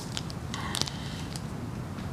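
Faint rustling and light clicks of Bible pages being turned and handled on a lectern, with a short cluster of sounds just under a second in.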